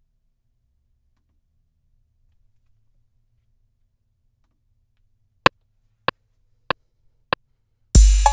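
Near silence, then the MPC software's metronome count-in: four sharp clicks one beat apart at 96.5 BPM, about 0.6 s between them, the first accented and louder, just before the drum pattern starts.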